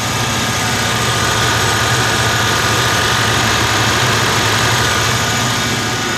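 1994 Lexus LS 400's V8 engine idling steadily. It was just started on a newly replaced fuel pump after sitting unused for years.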